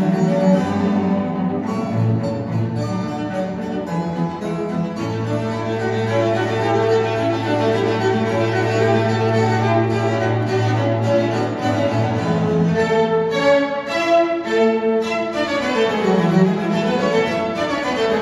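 Classical bowed-string music, violin and cello with string orchestra, played back through Sonus faber Aida floorstanding loudspeakers and heard in the room. A long low note is held through the middle, and the pitch dips and rises again near the end.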